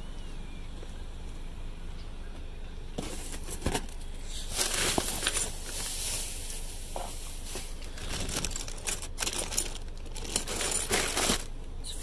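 Plastic packaging and cardboard rustling and crinkling as items are rummaged through in a box, in irregular bursts with sharp clicks starting about three seconds in, over a steady low rumble.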